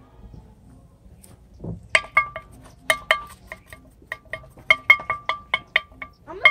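A spoon tapping against a small metal cup to knock flour out of it: a quick, irregular run of sharp, ringing metallic clinks starting about two seconds in.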